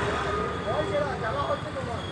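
Several people talking in the background, voices overlapping, over a low steady rumble.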